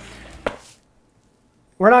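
A single short click about half a second in, then dead silence until a man starts speaking near the end.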